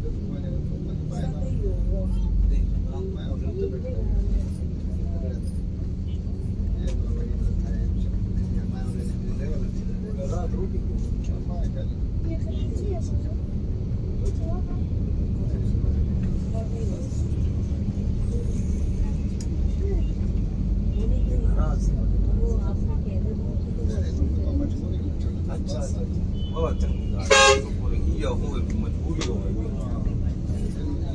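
Steady low rumble of a Yutong Nova coach on the move, heard from inside the cabin, with one short, loud vehicle horn toot near the end.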